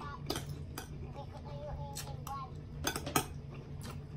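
Metal spoon and fork clinking and scraping against a ceramic bowl while eating: a series of sharp clinks, the loudest a little after three seconds in.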